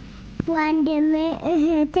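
A young girl singing in a high voice, starting about half a second in and holding short wavering notes.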